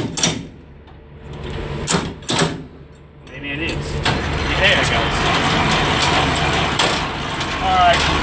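Semi-trailer landing-gear crank: two sharp metal clicks about two seconds in as the crank is set in high gear, then a steady mechanical rattle from about three and a half seconds on as the legs are wound down.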